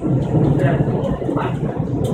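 Renfe CIVIA electric commuter train running, heard from inside the carriage as it enters a tunnel: a loud, steady low rumble of wheels and motors.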